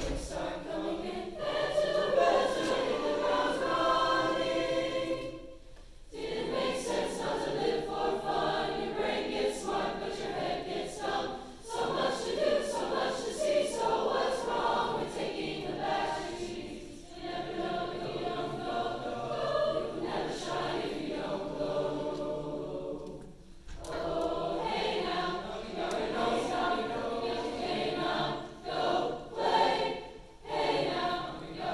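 A large high school choir singing, in phrases of about six seconds with brief breaks between them.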